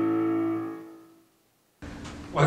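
Final held chord of a keyboard accompaniment to a hymn, with the singers already silent; it fades away over the first second. After a moment of silence there is a sudden change to faint room tone near the end.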